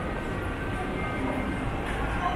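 Steady ambient noise of a large indoor shopping concourse: a continuous low rumble with faint scattered voices over it.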